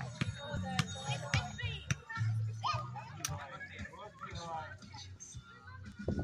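Children's voices calling and chattering over background music with a low bass line, with a few sharp knocks in between.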